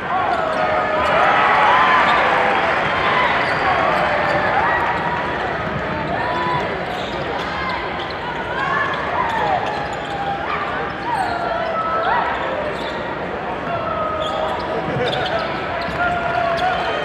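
Basketball gym crowd noise: many voices calling and cheering at once, with short squeaks of sneakers on the hardwood court and the ball being dribbled.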